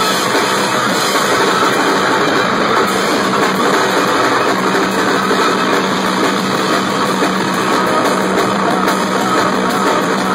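Live noise-rock: fast, dense drumming on a full drum kit under a wall of distorted, droning noise, loud and continuous. A steady low drone grows stronger about four and a half seconds in.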